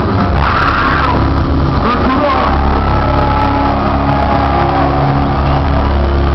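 A live metal band playing loud through an overloaded recording: sustained distorted guitar chords and bass, with a voice over them in the first couple of seconds.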